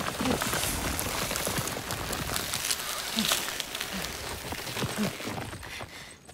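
A dense rustling, crackling hiss of vines and foliage on the move, full of small clicks, with short grunts from people now and then.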